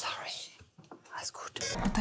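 Quiet whispered speech.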